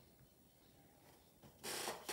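Near silence, then near the end a short rustle of a sheet of patterned craft paper being slid across a stack of paper sheets.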